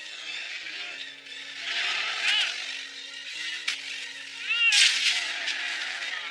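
Animated-film soundtrack: orchestral score with held low notes, cut by loud rushing sound effects about two seconds in and again near five seconds.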